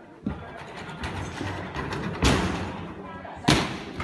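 Thuds of a gymnast's tumbling pass on a sprung tumbling track ending on crash mats over a foam pit, with a light thud near the start and two loud ones about two and three and a half seconds in.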